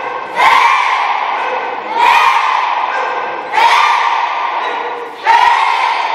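A children's taekwondo class shouting together in unison with each technique of a punching drill, four loud drawn-out shouts about a second and a half apart.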